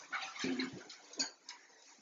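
Kitchen handling noises as things are moved about in an open refrigerator: rustling and a dull knock, then two light clicks, all within the first second and a half.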